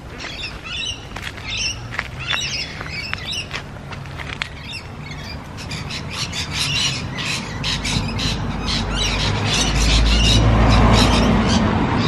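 Birds calling again and again in quick, short calls that come thick and fast in the second half. A low rumble builds up under them from about eight seconds in.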